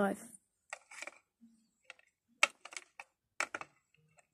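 Light plastic clicks and taps of a small toy figurine being moved about and set down on a plastic dollhouse, coming in small scattered clusters.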